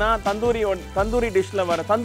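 A voice over background music with a steady low bass.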